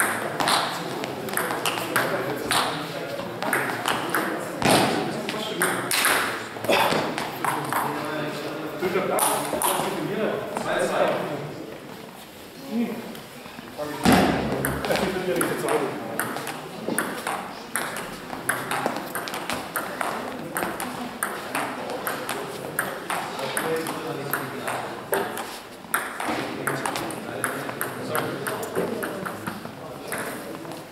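Table tennis ball clicking back and forth off bats and table in quick rallies, with a short lull about twelve seconds in and a sharp loud knock just after it.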